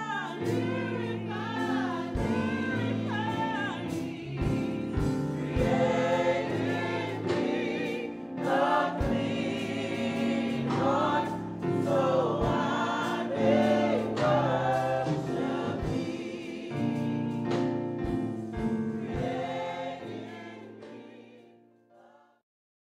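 A hymn sung by a group of voices over sustained accompaniment, fading out near the end.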